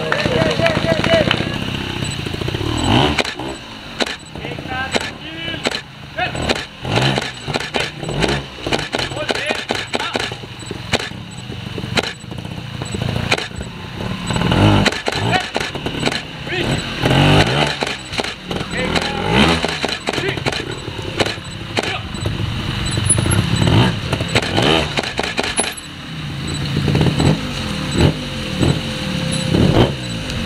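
Trials motorcycle engine revving in repeated short bursts of throttle as the bike is ridden over rocks.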